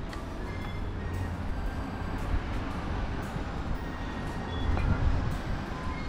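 City street ambience: a steady low rumble of traffic, swelling a little twice.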